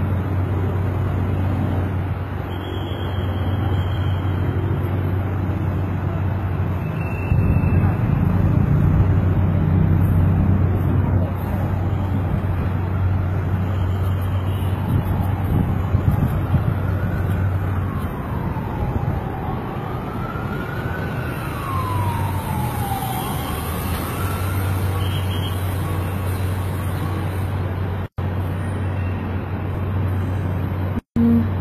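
City traffic noise with a steady low hum, and an emergency vehicle's siren wailing past the middle, its pitch slowly rising and falling a few times.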